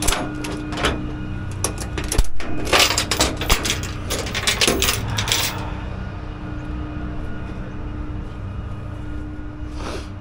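A quick run of sharp metallic clicks and clatter through the first half, thickest from about three to five and a half seconds in. Under it, and alone after it, an engine idles with a steady hum.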